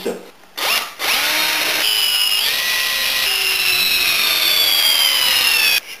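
Cordless drill-driver with a thin wood bit pre-drilling green hazel wood. The motor whine spins up about a second in, runs for nearly five seconds with its pitch shifting as trigger and load change, then cuts off.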